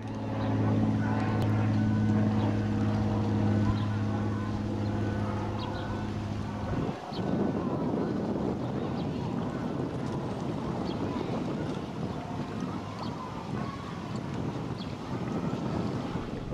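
A steady low motor drone that cuts off abruptly about seven seconds in, followed by a steady rushing noise like wind on the microphone.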